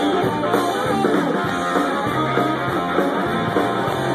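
A live rock band playing an instrumental passage with no vocals: electric guitars, bass guitar and a drum kit, recorded loud on a phone's microphone.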